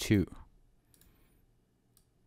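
A few faint computer mouse clicks, one about a second in and another near the end, over a low background hum.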